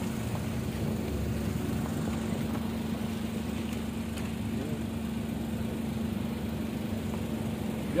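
A car engine idling close by: a steady, even hum over a low rumble.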